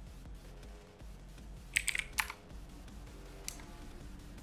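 A quick run of four or five computer keyboard keystrokes about two seconds in, and a single keystroke near the end, over quiet background music.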